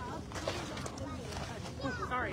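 People's voices talking indistinctly, clearest near the end, over a steady low background rumble.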